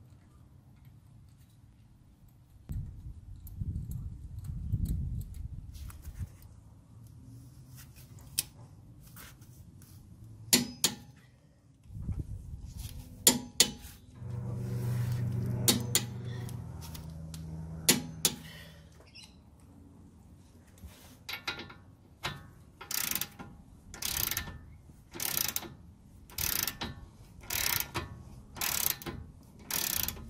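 Ratchet wrench with a socket run down on the lower ball joint nut, its pawl rasping in short strokes about once a second through the last third. Earlier there are a few sharp metal clicks and knocks from tool handling.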